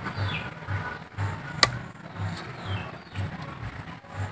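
Quiet outdoor background with a faint low hum and soft low pulses, broken by one sharp click about a second and a half in.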